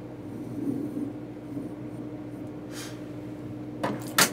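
Pencil lead of a bow compass scratching lightly on drafting paper as an arc is swung, with a short louder scratch about three seconds in and a light click near the end.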